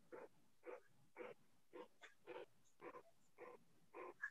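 A dog barking faintly and repeatedly, about eight short barks at a steady pace of roughly two a second.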